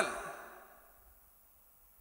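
The tail of a man's spoken word into a microphone fading away in the first half-second or so, then near silence: a pause in his speech.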